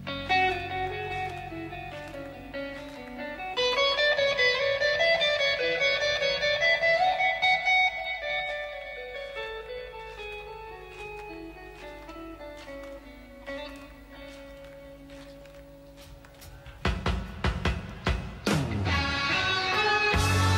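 Electric guitar solo in a live hard-rock recording: slow single-note melodic lines, bent and sustained, growing quieter and sparser toward the middle. Near the end come loud, hard-picked notes and a falling dive in pitch as the full band comes back in.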